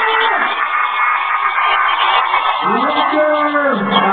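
Live music with a voice over it; near the end a singer slides up into a note and holds it for about a second.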